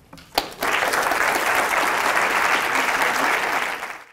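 Audience applauding. A single sharp clap comes about half a second in, then steady dense clapping follows and fades away at the very end.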